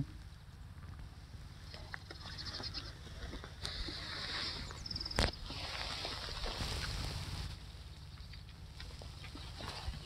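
A horse sniffing and breathing close to the microphone as it noses at a gloved hand, in soft rushes of air, with light handling clicks and one sharp click about five seconds in.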